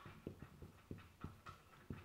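Faint felt-tip marker strokes on a whiteboard as a word is written: about six short, soft ticks and squeaks, a few tenths of a second apart.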